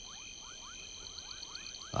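Night-time swamp ambience: a chorus of frogs giving short rising calls, several a second, over a steady high insect trill.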